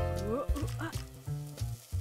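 Light cartoon background music with a frying-pan sizzle sound effect as pancake batter cooks, and a few short rising tones in the first second.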